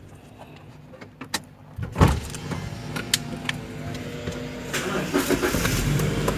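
Inside a car: a few light clicks, then a low thump about two seconds in, after which the car's engine runs with a steady low hum that grows slowly louder.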